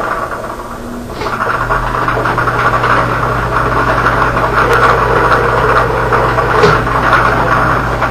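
Lottery ball-drawing machine running: a steady motor hum with the numbered balls rattling as they mix. It starts up about a second in and then runs evenly.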